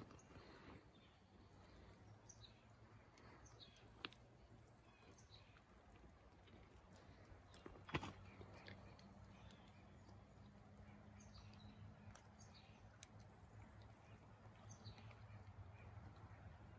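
Near silence: faint outdoor ambience with a low steady hum and scattered faint bird chirps. A sharp click comes about four seconds in, and a louder one about eight seconds in.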